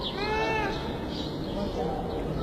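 A baby crying: one arching wail lasting about half a second, shortly after the start, and a weaker cry near the end, over the murmur of a crowded hall.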